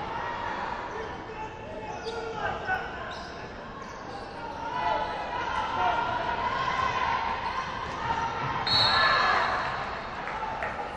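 A basketball being dribbled and bouncing on a hardwood gym floor during live play, with players' voices calling out, echoing in a large gymnasium.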